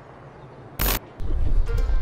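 Soft background music, broken about a second in by a short loud burst of noise at the cut. It is followed by a loud, unsteady low rumble of wind and handling noise on a head-mounted action camera's microphone.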